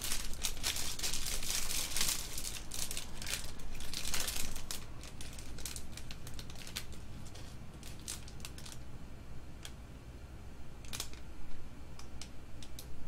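Trading-card pack wrappers crinkling and cards rustling and clicking as Topps baseball card packs are opened and handled. The sound is dense for the first few seconds, then thins to scattered clicks, with another flurry near the end.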